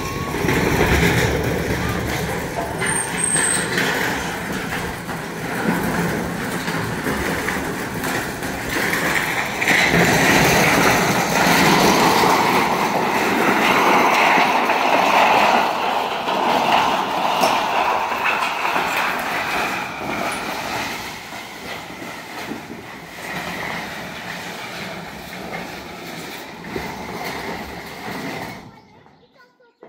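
A long corrugated metal roofing sheet dragged over stony, gravelly ground: a continuous scraping, rattling clatter of thin metal. It is loudest in the middle and eases off over the last several seconds.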